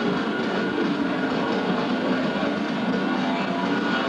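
Live heavy metal band playing loud distorted electric guitars in a dense, steady wall of sound, picked up by a camcorder microphone in the room.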